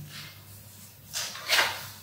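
Paper rustling as a page of a book is turned: two short rustles, about one and one and a half seconds in.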